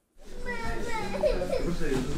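A young child's voice talking among other voices in a shop, over a low steady rumble, starting just after a moment of silence.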